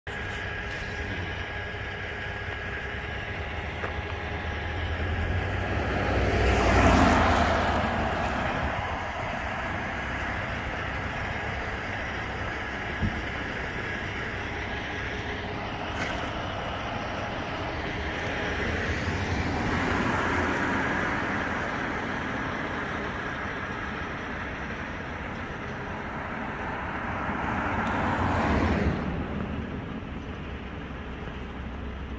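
Road traffic on damp asphalt: vehicles pass by one at a time, each swelling up and fading away. The loudest passes about seven seconds in, another around twenty seconds, and a third near the end, over a steady traffic hum.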